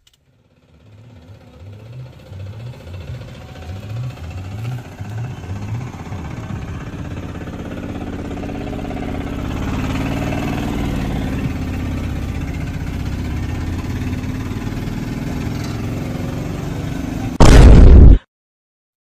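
Auto-rickshaw's single-cylinder engine starting and chugging unevenly at first, then settling into a steady, louder run. Near the end a short, very loud burst cuts in and stops abruptly.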